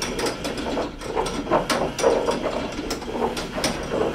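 Motor-driven rotating-arm device clicking and rattling unevenly as its drive turns the arm around its vertical shaft, with the drive being turned down from about 60 RPM toward 30.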